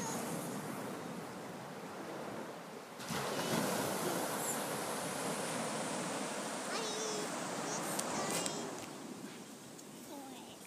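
Surf washing onto a sandy beach: a steady rushing noise that grows suddenly louder about three seconds in and eases off near the end.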